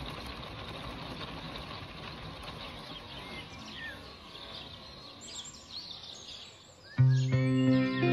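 A steady hiss of rain fades as birds chirp, then guitar music starts suddenly and loudly about seven seconds in.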